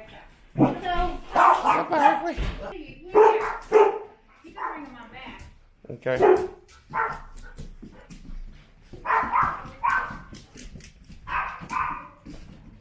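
Dogs barking and yipping in a boarding kennel, in short bursts repeated every second or two.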